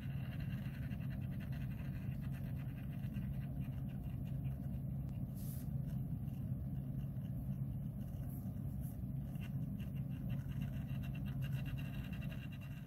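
A small motorized display turntable humming steadily as it rotates.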